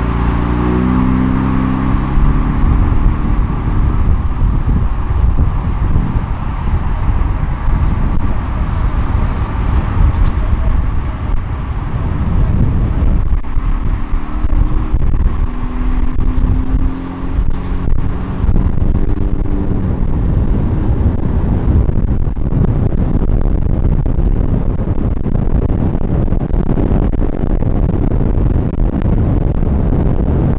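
Cars driving along a road, heard from a moving vehicle: steady road and wind noise with an engine running. The engine's pitch falls in the first couple of seconds and it comes up again briefly about halfway through.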